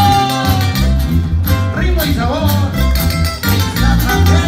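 Live band playing tierra caliente dance music: guitars over a strong, steady bass beat, with a gliding melody line above.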